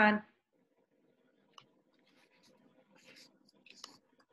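Near silence of an online call after a short spoken word, with a few faint clicks about one and a half seconds in and near the end.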